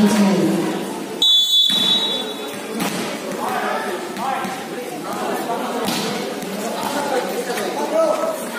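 A referee's whistle, one short blast about a second in, held for about half a second. Players and spectators talk and call out around it.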